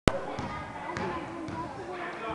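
A basketball bouncing on a hardwood gym floor, three bounces about half a second apart, under echoing children's voices. A sharp click sounds at the very start.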